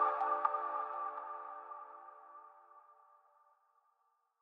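Electronic intro jingle ending: a final synthesizer chord of several held tones rings on and fades away, dying out about two and a half seconds in.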